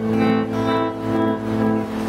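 Electric guitar chord ringing through a small hand-built tube amp, a Fender Princeton 5F2-A clone with a Jensen C10N speaker. Its volume swells and fades slowly and evenly from a homemade electro-mechanical tremolo unit set to a very slow rate, a deep throbbing pulse.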